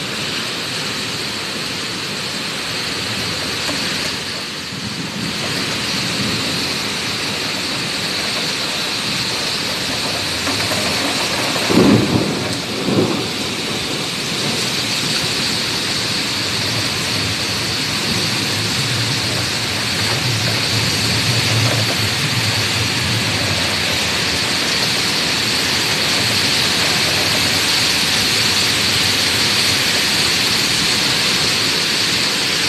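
Severe storm: heavy rain and strong wind make a loud, steady rushing, with two short, louder bursts about twelve seconds in.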